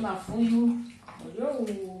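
A woman talking while water runs from a kitchen tap into the sink as green bananas are washed.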